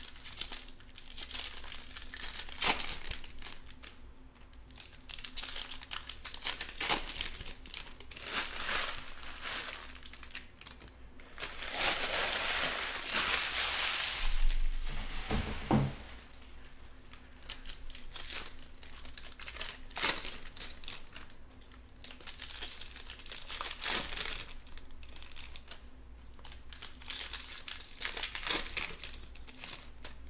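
Topps Chrome baseball card-pack wrappers crinkling and rustling in the hands as packs are opened and handled, in bursts on and off, with a longer, louder stretch of crinkling about halfway through.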